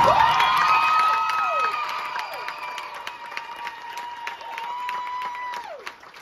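Stadium crowd applauding and cheering right as a marching band's show ends. Long high cheers or whistles hold steady, then slide down in pitch, and the whole noise gradually dies away.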